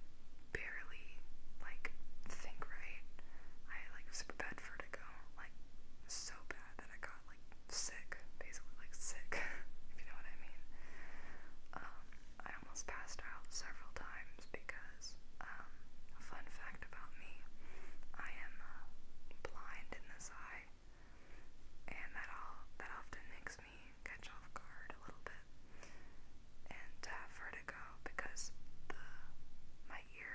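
Only speech: a woman whispering steadily, with crisp hissing s-sounds.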